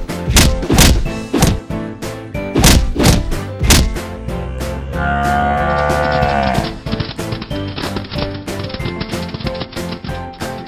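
Background music with about six heavy thuds of fight sound effects in the first four seconds. About five seconds in comes a long cow moo that drops in pitch as it ends, then the music carries on with a steady beat.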